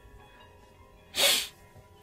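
A crying young woman sniffles once, sharply, about a second in, over faint background music.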